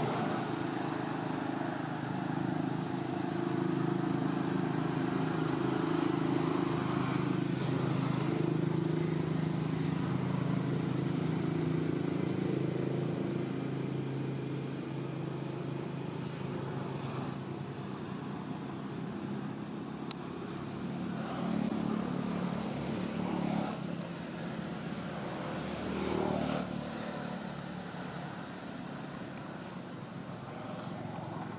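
A motor vehicle engine running steadily nearby: a low hum that weakens after about halfway, with a few brief louder sounds near the end.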